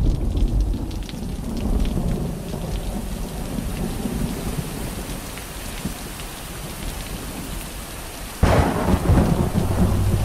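Thunderstorm sound effect: steady rain with rolling low thunder, then a sudden loud crash of thunder about eight and a half seconds in.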